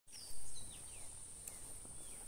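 Outdoor lakeside ambience: a steady high insect drone with several short descending bird chirps, and a brief louder noise about half a second in.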